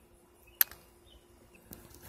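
A single sharp click about half a second in, against a quiet background.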